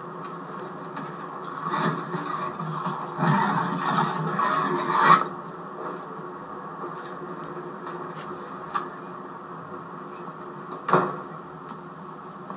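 Television soundtrack picked up off the set's speaker, with no dialogue: a steady background hum, a louder noisy stretch of about three seconds in the first half that cuts off suddenly, and a single sharp knock near the end.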